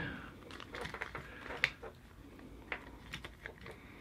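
Faint handling noise: light clicks and rustling of a thin plastic sheet as hands press it down over a quadcopter's frame and electronics, with one sharper click about a second and a half in.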